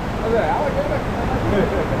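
Rushing, churning water around a river rapids ride raft, a loud steady noise, with a rider's voice exclaiming over it near the end.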